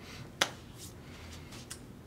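A single sharp click a little under half a second in, then a fainter short tick near the end, over quiet room tone.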